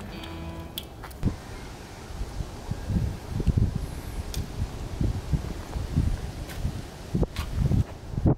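Background music ending about half a second in, then low wind rumble on the microphone with scattered light clicks from wire connectors and cables being handled.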